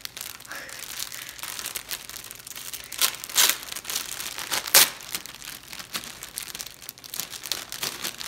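Clear plastic garment bag crinkling and rustling as it is handled and pulled open, with a few sharper crackles about three and three and a half seconds in and the loudest near five seconds in.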